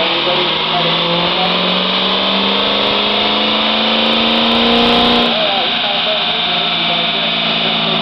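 Ford 7.3 Powerstroke V8 turbo-diesel making a pull on a chassis dyno, its note climbing steadily in pitch for about five seconds, then dropping off suddenly as the pull ends.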